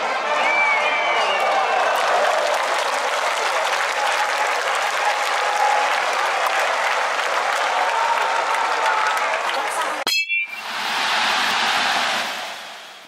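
Stadium crowd noise with cheering. About ten seconds in it cuts out, a metal bat rings sharply off the ball, and the crowd roar swells up.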